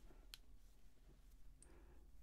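Near silence: room tone with a faint click about a third of a second in and another fainter one near the end.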